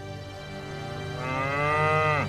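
A cow mooing: one long call beginning about a second in.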